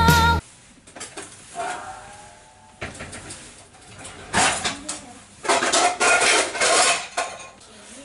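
A song cuts off suddenly just after the start. Then come irregular clicks, clatter and rustling of kitchen handling while popcorn is loaded into a microwave, loudest in the second half.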